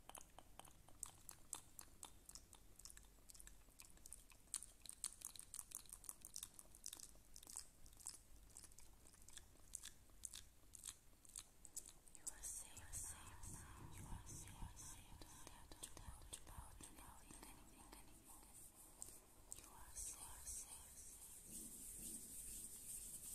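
Close-miked ASMR mouth sounds: a quick, uneven run of soft wet clicks for about the first half, then a denser, breathier stretch of mouth noise and whispering.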